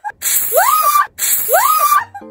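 An aerosol can of cooling foam spraying with a loud hiss while a woman screams, her voice rising and then held. The same burst of about a second is heard twice in a row, cut off sharply each time, like an edited replay.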